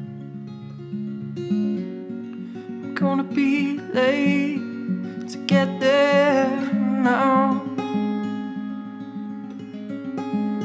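Acoustic guitar played steadily through the song's accompaniment, with a voice singing two drawn-out, wavering phrases without clear words over it, about three seconds in and again about five and a half seconds in.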